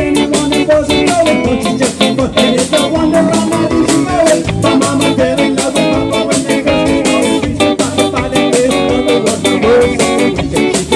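Live band playing an upbeat, ska-like rock song: strummed acoustic guitar over a steady drum beat, with a man singing the lead vocal.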